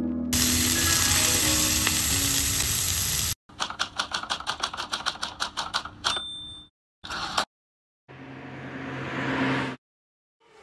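Food sizzling loudly in a frying pan, with music underneath, for the first few seconds; then a rapid even run of clicks, about eight a second, and a few short bursts of hiss.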